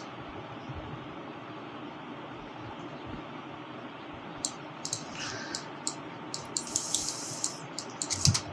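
Steady hiss of room tone, with a scattered handful of light clicks from working the computer starting about halfway through.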